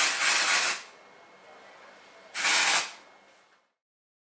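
Aerosol can of dry shampoo sprayed into hair twice: a hiss of about three-quarters of a second, then a shorter one about two seconds in.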